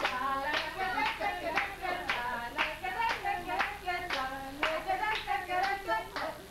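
A group clapping in a steady rhythm, about two claps a second, while singing along.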